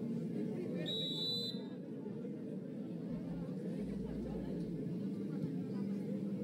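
Beach arena crowd from the match broadcast: a steady babble of many spectators' voices, with one short, high referee's whistle about a second in that starts the next rally.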